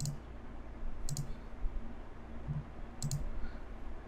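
Computer mouse clicking: three sharp clicks about one to two seconds apart, over a low steady hum.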